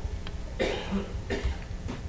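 A person coughing twice, short and breathy, into a nearby microphone.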